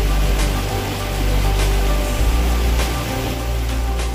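Background music with sustained tones over deep bass notes.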